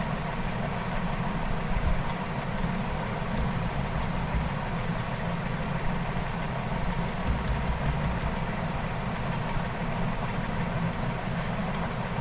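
Steady low background rumble and hiss, with faint clicks of computer keys as code is edited, in small clusters a few seconds in and again past the middle.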